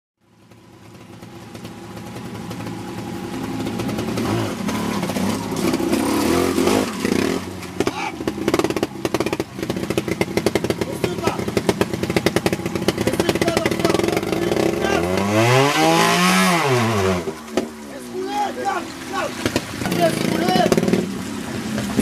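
Trials motorcycle engine running in short blips and bursts of throttle as it climbs over rocks, with one long rev that rises and falls about two-thirds of the way through. The sound fades in at the start.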